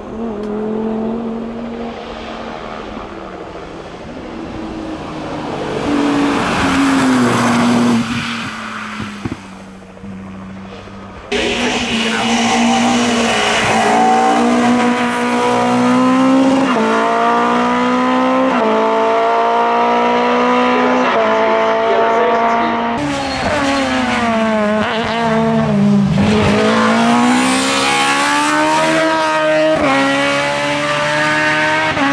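Race car engines at full throttle on a hillclimb, one car after another. Each engine's pitch climbs and drops back again and again as it shifts up through the gears, with a dip and climb once as a car brakes, shifts down and accelerates again. The sound changes abruptly twice where one car's run gives way to the next.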